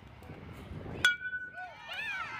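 A metal baseball bat hits a pitched ball about a second in: one sharp ping that rings on briefly. Shouting voices rise near the end as the ball is put in play.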